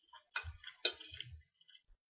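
Close-miked chewing of crisp food, a quick run of crunches and wet mouth clicks, the sharpest crack just under a second in.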